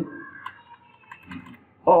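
Computer keyboard typing: a few soft, scattered key clicks.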